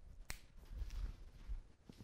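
Quiet room sounds: one sharp click about a third of a second in, then a few fainter clicks and soft low thuds, like footsteps, as a person walks across the room.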